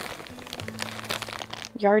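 Clear plastic zip bag holding a fabric bundle crinkling softly as it is handled, over a low steady hum; a voice starts again near the end.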